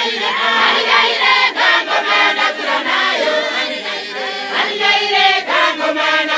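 A Johane Masowe weChishanu apostolic congregation singing a song together: many voices, men and women, in a loud choir without a break.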